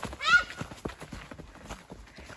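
Quick running footsteps crunching through dry fallen leaves on a dirt trail, an irregular patter of many steps. A child's short high-pitched shout rings out just after the start and is the loudest sound.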